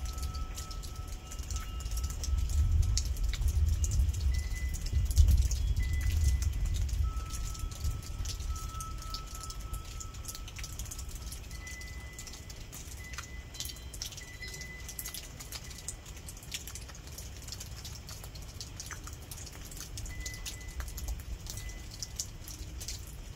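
Rain falling, with scattered sharp drips throughout, and windchimes now and then sounding single long ringing notes. A low rumble of distant thunder swells about two seconds in and dies away after about seven seconds.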